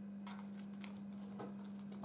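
Faint, soft clicks and taps of tarot cards being handled and squared into a deck, over a steady low hum.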